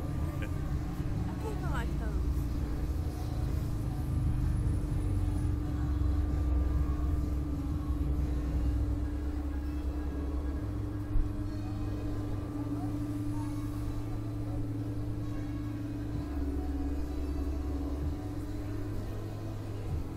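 A steady low mechanical rumble with a constant hum above it. The rumble steps up and down in level a few times, and there is one short knock about eleven seconds in.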